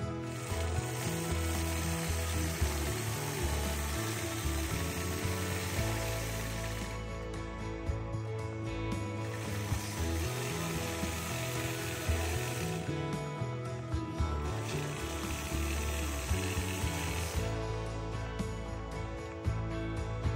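Longarm quilting machine stitching along a ruler, a fast mechanical clicking of the needle, under background music with stepping bass notes.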